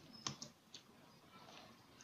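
A few faint computer keyboard clicks in near silence, bunched in the first second.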